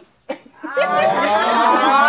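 A group of people laughing and calling out together, many voices overlapping, breaking out about half a second in after a brief hush.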